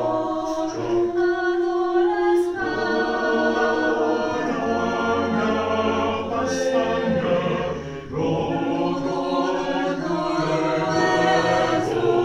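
A mixed choir of men's and women's voices singing a cappella in long, held notes, with a brief pause about eight seconds in.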